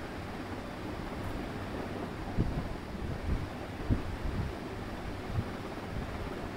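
Steady low rumbling background noise, with a few soft low thumps in the second half.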